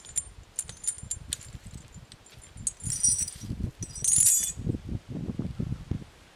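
Rusty iron chain hanging against an oak trunk, clinking and jangling as it swings, with denser rattles about three and four seconds in, along with low thuds in the second half. This is the kind of chain clanking that walkers hear in forests.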